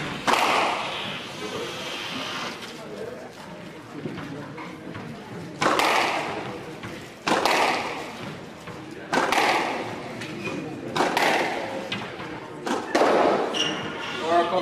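Squash ball struck hard by a racket and smacking off the court walls during a warm-up, each hit echoing in the hall. After a lull in the first few seconds, the hits come about every one and a half to two seconds.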